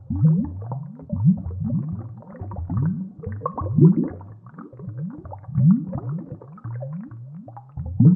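Underwater bubble sound from scuba divers' regulator exhaust: a continuous run of low, rising gurgles, about two a second.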